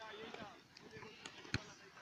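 Faint, overlapping children's voices calling out, with one sharp thump about one and a half seconds in.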